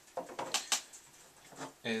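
A few light clicks and knocks, about three in the first second, from an audio cable's jack plug being handled and set against a desk.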